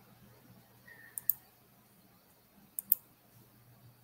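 Two sharp double clicks at a computer, about a second and a half apart, over a faint low hum of room tone.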